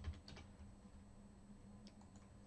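A few faint computer keyboard keystrokes in the first half-second, then near silence with a single faint click near the end.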